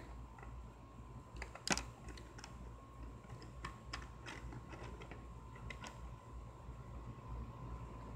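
Scattered light clicks and taps of small objects being handled, with one sharper click about two seconds in, over a faint steady hum.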